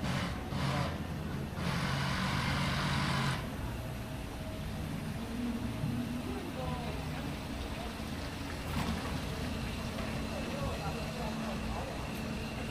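City street traffic: vehicle engines running, with a hiss of about two seconds near the start, like a passing vehicle or an air-brake release. Voices of passers-by are heard faintly.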